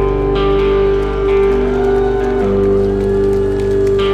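Rock band playing live: an instrumental passage of guitars over held chords, with the chord changing shortly after the start and again about two and a half seconds in.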